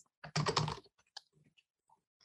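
Typing on a computer keyboard: a quick run of keystrokes in the first second, then a few faint, scattered clicks.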